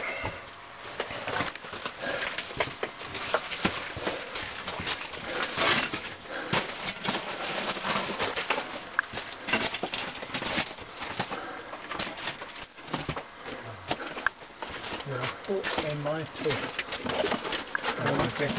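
Footsteps crunching and scuffing over the loose rock and gravel floor of an old mine tunnel, with irregular clicks of stones and rustling gear. Faint, indistinct voices come in near the end.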